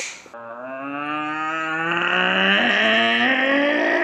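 A person's voice holding one long note that starts a moment in and slowly rises in pitch.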